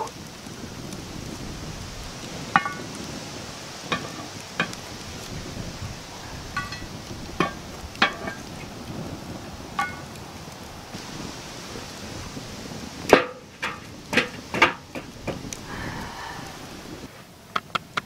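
Wood fire crackling in a steel fire ring, with scattered sharp pops. About three-quarters of the way through there is a short run of louder sharp knocks and clinks.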